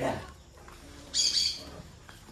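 A bird gives a short, high, scratchy call about a second in, after a brief dull sound right at the start.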